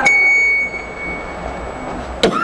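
A single high, bell-like note plucked on an acoustic-electric guitar, ringing out and fading over about a second and a half.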